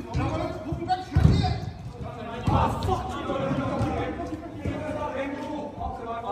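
A football being kicked and thudding on artificial turf in a big echoing hall, with two heavy thuds about a second and two and a half seconds in. Players' voices call out throughout.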